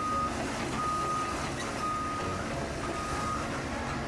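Wheel loader backing up: its reversing alarm beeps a single steady tone about once a second over the steady running of its engine.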